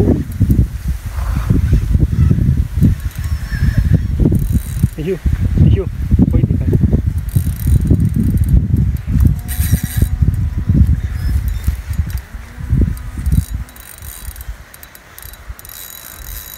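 Spinning reel being wound in against a hard-bent rod with a fish on the line, its gears and line whirring in quick rhythmic runs under heavy rumbling noise on the microphone. The rumbling eases off near the end.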